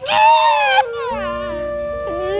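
A man's loud, drawn-out wail of mock crying that breaks off just under a second in, followed by held notes of background music.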